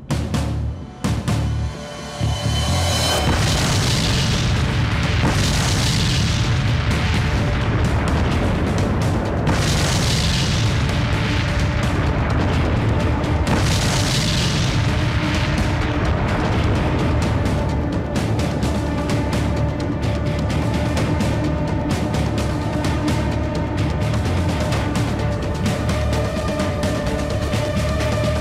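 Several explosions going off one after another, mixed under a loud, dramatic film music score.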